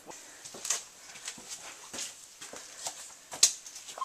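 Footsteps and scuffs on a wet cave walkway: irregular short clicks a fraction of a second apart, the sharpest about three and a half seconds in.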